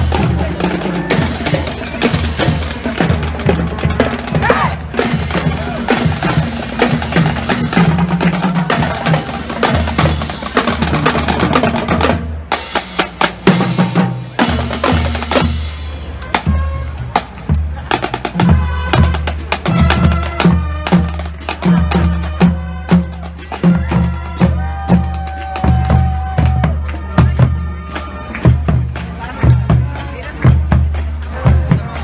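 Marching band drumline playing a street cadence: snare drums, multi-tenor drums and a bass drum, with rolls and steady bass strokes and a short break about twelve seconds in.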